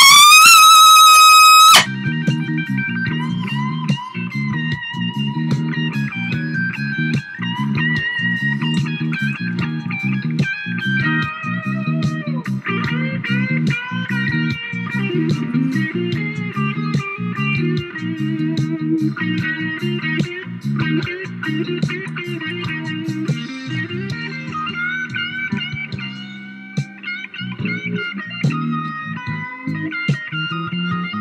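A trumpet played close to the microphone glides up to a loud, high held note that cuts off about two seconds in. After that, a recorded backing track plays on with a steady rhythm section and melody lines above.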